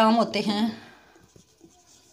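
Marker pen writing on a whiteboard: faint, irregular scratchy strokes as letters are written, heard after a spoken word ends less than a second in.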